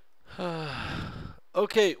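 A man's long, breathy voiced sigh, about a second, falling in pitch, followed near the end by a couple of short spoken syllables.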